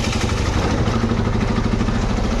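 A small vehicle engine running steadily at an even speed, a constant low hum with road noise.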